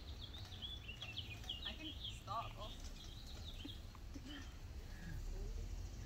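Outdoor ambience of birds chirping: a quick run of short, high chirps through the first couple of seconds and a brief lower chirping figure a little after, over a steady low background rumble.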